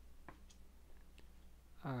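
A few faint, sharp clicks as hands twist strands of yarn around a metal crochet hook, braiding a cord.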